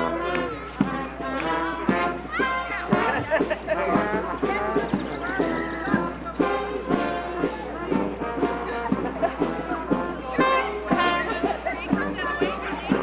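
A brass community band, sousaphone among the horns, playing a tune while marching, with people's voices chattering over it.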